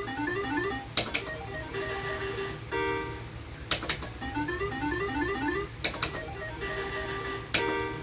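Electronic sound effects of an Island 2 slot machine as its reels are spun again and again: short rising runs of beeps, held chiming tones, and a sharp click every two to three seconds.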